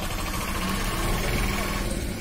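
Steady low rumble of an idling engine, mixed with general street noise.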